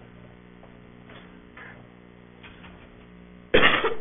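Quiet meeting-room pause with a steady low electrical hum, then a short, loud cough near the end, just before a man's voice resumes.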